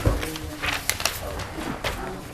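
Papers rustling and pages being turned, a few short crisp rustles, over faint low murmuring voices.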